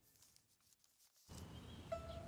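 Near silence as the soft background music dies away. A faint low background hum comes in a little past halfway, with the first note of new music right at the end.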